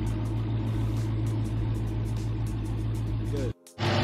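Steady low hum of the 2019 Dodge Charger Hellcat's supercharged 6.2-litre V8 idling, broken by a sudden brief dropout near the end.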